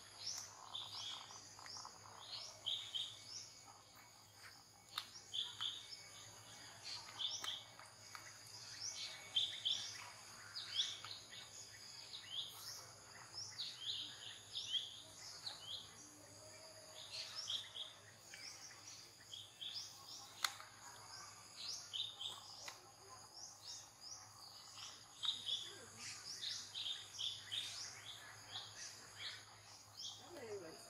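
Bird chirps repeating throughout, short calls coming in clusters, over a steady, high insect drone.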